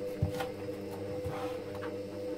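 Steady electrical machine hum, with a soft thump about a quarter second in and a few faint clicks as a rabbit carcass is worked on a plastic cutting board while its front leg is taken off.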